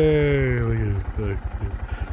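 A motorcycle engine running with a steady low putter of even pulses, under a long drawn-out call of a man's voice that falls in pitch over the first second.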